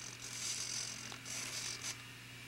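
Model airplane servos whirring in a few short buzzy bursts as the transmitter stick is moved. They drive the rudder and elevator together through the radio's rudder-to-elevator mix.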